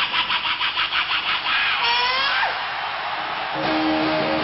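A male rock singer's high wailing vocal into a live microphone, wavering rapidly several times a second and then sliding down in a falling scream. About three and a half seconds in, an electric guitar chord rings out as the song begins.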